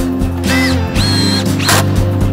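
Background music with a steady bass line, over which a cordless drill whines in two short trigger bursts as it drives the bolt of a climbing hold into a wooden volume.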